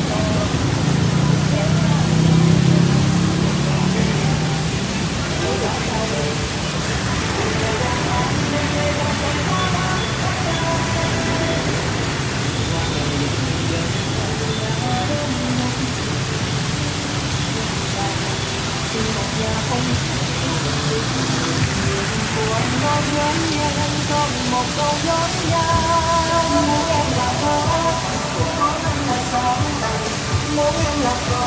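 Steady rush of falling and splashing water from decorative fountains and an artificial waterfall, with music playing over it.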